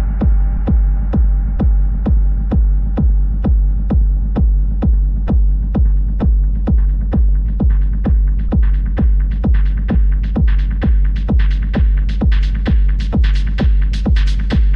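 Techno: a steady four-on-the-floor kick drum at a little over two beats a second over a continuous deep bass, with the high end gradually brightening from about ten seconds in.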